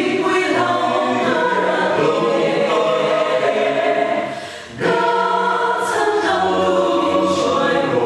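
Mixed-voice choir of men and women singing a gospel song in Mizo in full harmony. They break off briefly about halfway through and come back in together.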